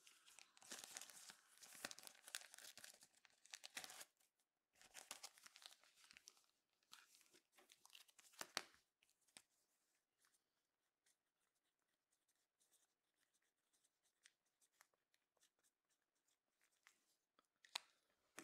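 Faint crinkling and scraping of a trading card in a plastic sleeve and top loader being handled. It comes in clusters over the first few seconds and again around eight seconds, then only faint scratchy ticks of a marker pen writing on the plastic holder.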